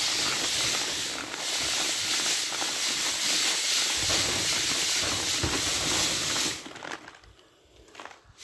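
Wheat grain being shaken in a round hand sieve to clean it: a steady, dense hiss of kernels sliding and rattling over the mesh, which dies away about six and a half seconds in.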